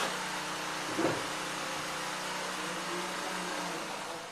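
Steady hum and hiss of workshop machinery running, with one short soft blip about a second in.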